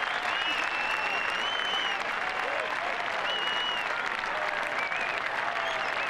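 Steady applause from a large golf gallery, with a few faint voices in the crowd.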